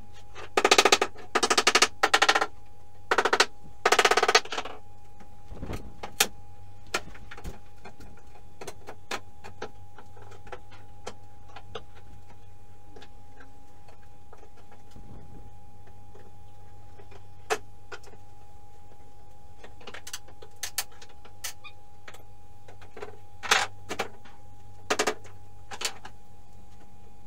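Wooden subfloor boards being pried up and knocked about with a steel pry bar, the audio sped up so the knocks come as fast clattering runs: two loud runs in the first few seconds, then scattered single knocks and two short runs near the end.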